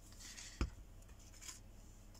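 Faint rustling of a paper circle being handled after glue is put on its back, with one short knock about half a second in as a plastic glue bottle is set down on the desk.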